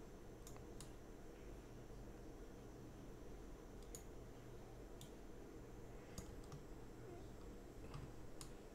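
Faint computer mouse clicks, about six of them, spaced irregularly over quiet room tone.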